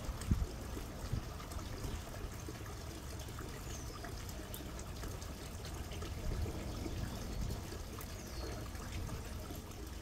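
Water trickling steadily in a shallow, pebble-bottomed garden pond stream.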